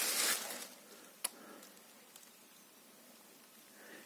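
Quiet outdoor background that opens with a short hiss of noise and has a single sharp click about a second in.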